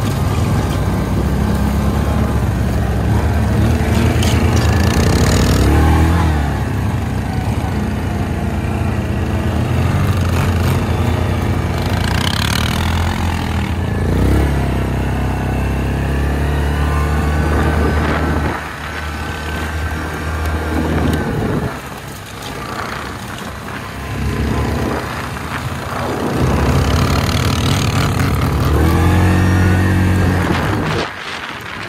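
ATV engine on a Yamaha Grizzly 700 quad, heard from the handlebars, revving up and easing off under throttle as it drives across rough ground, with wind and rushing noise over the microphone. The pitch climbs several times as the quad accelerates, and the engine falls quieter for a few seconds past the middle.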